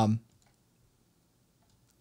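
The tail of a man's drawn-out "um", then near silence with a few faint clicks.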